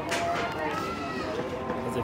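Indistinct voices talking in the background, with no clear words.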